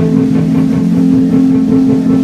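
Live rock band playing a song at full volume, with guitar holding sustained notes over the band.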